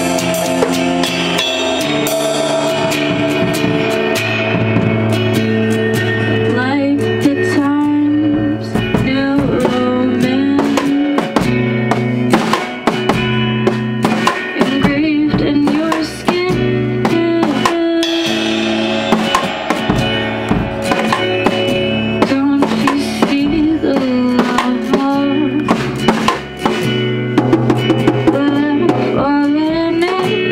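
A small band playing live: a drum kit with frequent cymbal and drum hits over sustained chords on an electric keyboard.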